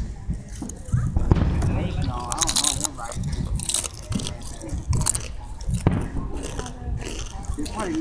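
Indistinct voices talking over a low rumble, with several short sharp cracks from fireworks going off.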